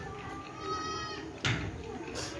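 A pitched, bleat-like call lasting about a second, then a single sharp knock of a mason's trowel against brick about one and a half seconds in.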